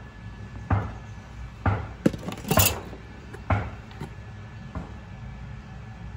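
Kitchen clatter: about seven sharp knocks and clinks spread over several seconds, the loudest one near the middle with a brief ring. Seasoning bottles are being handled, shaken over a metal bowl and set down on a stainless-steel counter.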